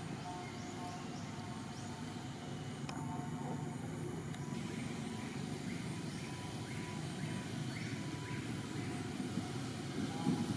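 Steady low outdoor rumble, with faint short high chirps repeating about twice a second through much of it.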